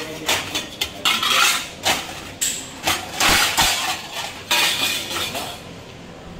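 Stainless steel plates and bowls clanking and scraping against each other and a wire dish rack as a plate is pulled out, a string of loud clatters that stops shortly before the end.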